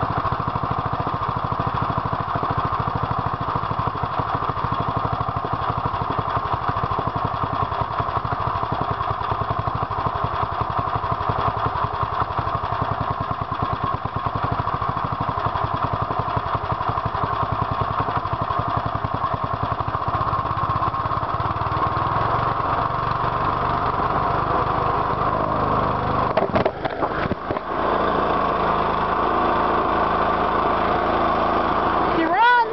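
Small single-cylinder Briggs & Stratton engine from the early 1970s on an old push mower, running steadily at a low idle. A few knocks from handling come near the end.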